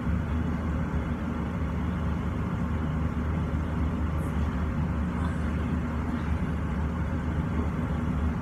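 Kitchen range-hood extractor fan running with a steady low hum. A faint clink of plates being handled in a cupboard comes about four seconds in.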